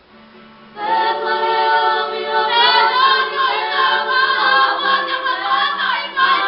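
A large kapa haka group singing together in unison, mostly young women's voices, coming in loudly just under a second in after a brief lull.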